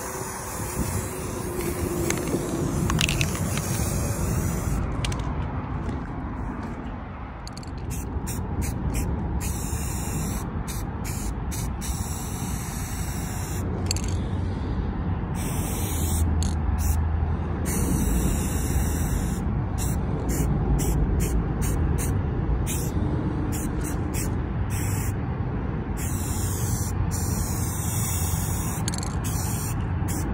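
Aerosol spray-paint can hissing, first in one long continuous spray, then from about five seconds in as a string of short on-off bursts, most under a second and some a second or two long. A steady low rumble lies underneath.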